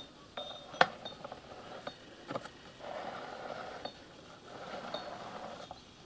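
Small rotating display turntable running: an uneven mechanical whirr with scattered light clicks and ticks, and one sharp click just under a second in.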